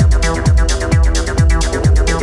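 Techno played through a DJ mix: a four-on-the-floor kick drum, a little over two beats a second, each kick dropping in pitch, with hi-hats between the kicks and a held synth chord over them.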